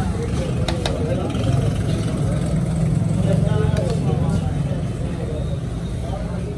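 Eatery background noise: a steady low rumble with voices talking in the background, and a few sharp clinks, a spoon against a steel plate.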